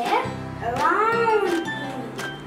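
Backing music with a steady beat, and over it a high voice sliding up and down in pitch in meow-like arcs.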